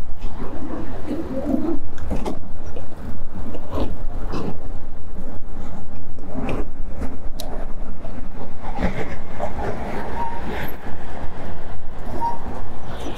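Riding noise from an e-bike rolling along a concrete sidewalk: a steady low wind rumble on the microphone, with scattered knocks and rattles from the bike going over bumps and pavement joints.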